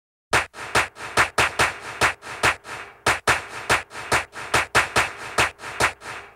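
Intro music made of a dry percussion beat with no tune: about two and a half sharp hits a second, with lighter hits between them.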